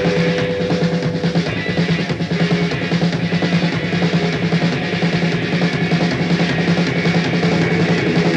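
Live rock band playing, with a drum kit driving a steady beat under electric guitar and bass.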